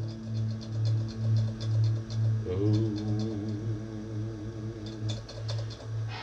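Electric guitar played quietly through an amp: a low note pulsing about twice a second with light ticks in time, and from about halfway in a held note with a wavering vibrato laid over it, which stops near the end.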